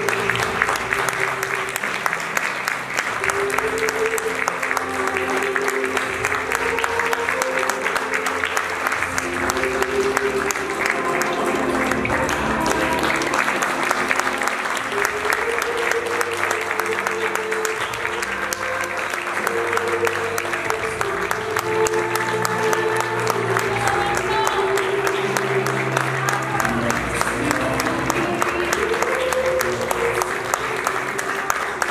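Theatre audience applauding steadily, with dense continuous clapping over background music that carries a slow melody.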